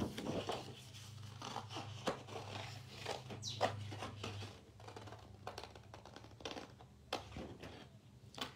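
Scissors snipping irregularly through patterned scrapbook paper, fussy cutting around a printed flower, with the sheet rustling as it is turned.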